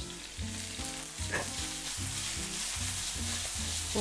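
Sliced onion frying in very hot oil in a pan, a steady sizzle.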